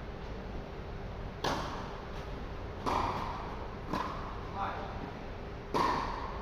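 Tennis balls struck by rackets in a doubles rally: four sharp hits, roughly one to two seconds apart.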